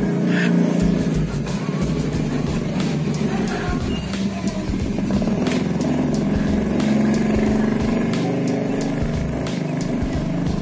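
An engine running steadily, with music playing at the same time.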